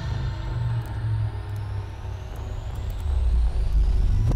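Cinematic intro sound effect: a deep, steady rumble under a faint whoosh that slowly rises in pitch and swells toward the end.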